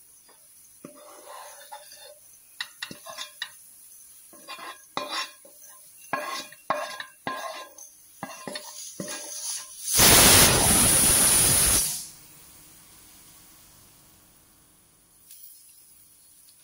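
Cooked onion and tomato being scraped from a non-stick pan into a stainless steel mixer-grinder jar: a run of short scrapes and metal clinks against the pan and jar. About ten seconds in, a loud steady rushing noise lasts about two seconds and then cuts off.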